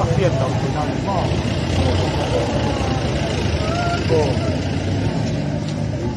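Scattered voices of people talking over a steady low rumble.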